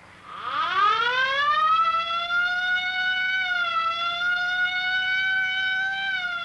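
Ambulance siren sound effect: one long wail that winds up in pitch over the first two seconds, then holds a steady high note with a slight dip partway through.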